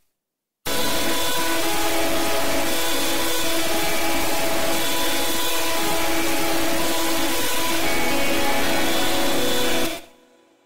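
A loud, steady wall of harsh, distorted noise with several sustained tones held inside it. It starts abruptly about half a second in, the tones shift pitch a few times, and it fades away just before the end.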